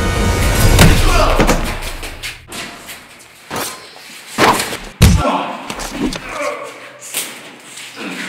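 Heavy thuds and slams of a staged fist fight, about five hits with the loudest about five seconds in, with short grunts between them. Dark music fades out over the first second or two.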